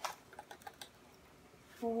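A measuring spoon clicking against a salt jar as sea salt is scooped out: one sharp click, then a few lighter clicks over the next second.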